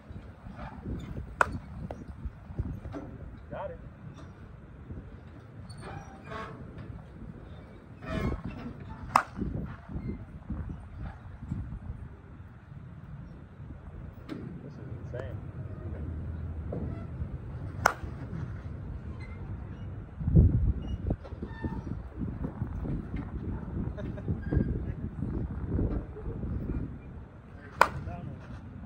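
Slowpitch softball bat striking pitched softballs: four sharp cracks about eight to ten seconds apart, the last near the end, against a low rumbling background.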